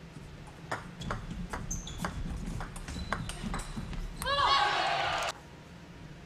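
A doubles rally of table tennis: about eight sharp clicks of the celluloid ball striking rubber paddles and the table, roughly two a second. As the point ends, a loud burst of shouting and cheering follows for about a second and cuts off suddenly.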